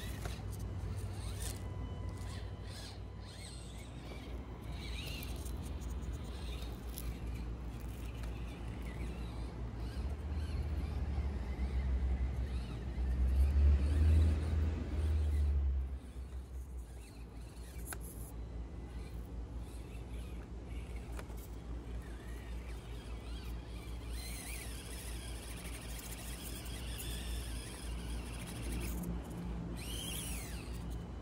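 Axial SCX24 micro RC crawler's small electric motor and drivetrain whirring faintly as it crawls over dirt and roots, under a low rumble that swells for a few seconds midway.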